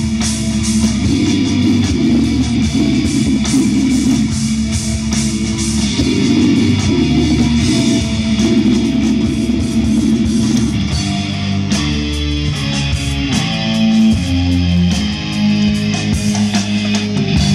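Live heavy metal band playing loud: distorted electric guitars, bass and drums, heard from the crowd. The riff changes about eleven seconds in.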